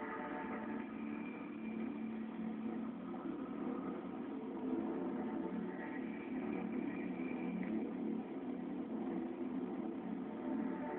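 Steady car engine and road noise heard from inside a moving car's cabin.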